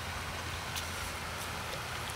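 Steady hiss of moving, splashing water with a few faint light ticks, a landing net being worked in shallow pond water.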